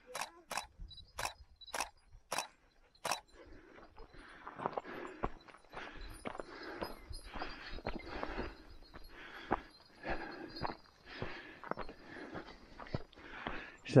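Footsteps on a dirt hiking trail: sharp steps about twice a second at first, then softer, uneven crunching and rustling.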